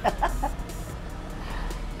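A woman's short laugh trailing off in a few breathy bursts, then faint background music over a low steady hum.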